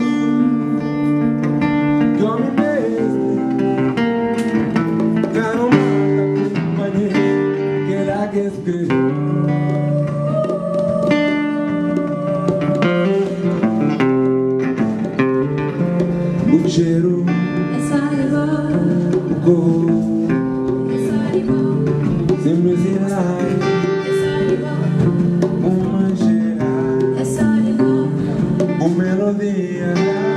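Live band music: acoustic guitar playing with a drum kit, and a singer singing into a microphone.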